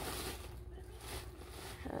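Rustling of a cardboard box and the plastic packaging inside it as a parcel is unpacked, with a short murmured 'hmm' near the end.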